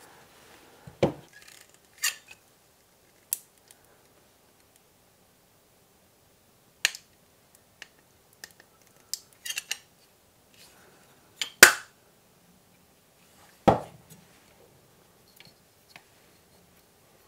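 Scattered clicks and knocks of small hard parts and a sealant tube being handled and set down on a workbench cutting mat, with two louder knocks near the end, about two seconds apart.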